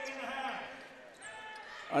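Basketball game sound from the arena court: a low crowd murmur with a basketball being dribbled.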